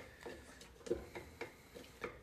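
A few light clicks and taps of a stirring utensil against a glass jar as flour-and-water sourdough starter is mixed inside it.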